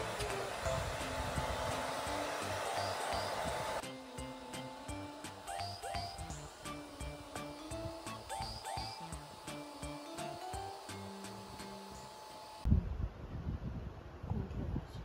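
Handheld hair dryer blowing on a dog's coat, under background music with a steady beat. The dryer noise drops away about four seconds in and the music carries on alone. Near the end the music cuts off and there are low thumps and rustling.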